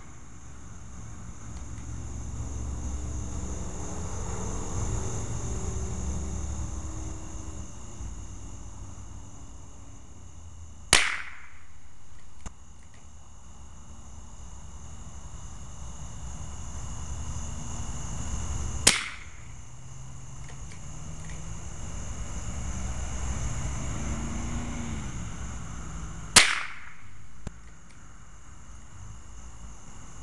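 .22 rifle fired three times, single shots about eight seconds apart, each a sharp crack. Under the shots runs a low background rumble that swells and fades twice.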